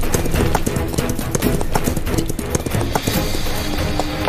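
A galloping horse's hooves beating rapidly and evenly on a dirt track, with background music underneath.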